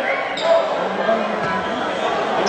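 Basketball arena crowd noise with voices echoing in a large hall, and a basketball bouncing on the hardwood court, one sharp bounce about half a second in.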